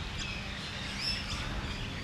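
Outdoor park ambience: a few short, faint bird chirps over a steady low background noise.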